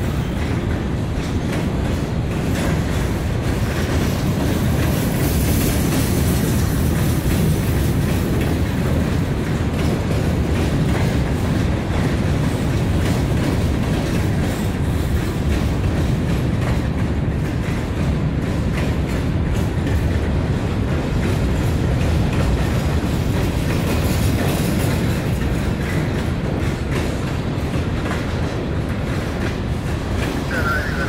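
Freight train of covered hopper cars rolling past close by: a loud, steady rumble of steel wheels on the rails.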